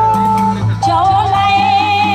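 A woman singing into a microphone with a wide vibrato over an amplified backing track with a steady bass. A held instrumental note gives way to her voice about a second in.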